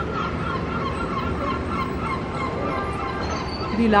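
A bird calling over and over, about three short, curving calls a second, over steady background noise.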